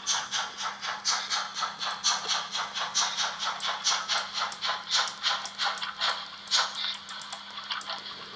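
Rhythmic steam chuffing from the mfx+ sound decoder of a Märklin H0 BR 01 model steam locomotive, played through its small loudspeaker at a steady pace of about four chuffs a second. The chuffs fade near the end.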